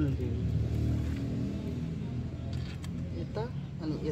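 Low, steady engine hum of a motor vehicle, loudest in the first second or so and then easing off, with faint voices near the end.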